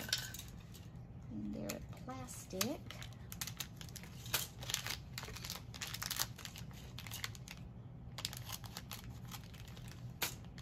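Small clear plastic bag crinkling in the hands as it is handled and opened to get at the little white pompom balls, in many short irregular crackles. A brief murmur of voice comes about two seconds in.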